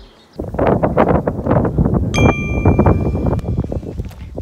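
Wind buffeting the microphone in loud gusts. About halfway through, a single bright ding rings on for a second or so, like an edited chime for an on-screen title.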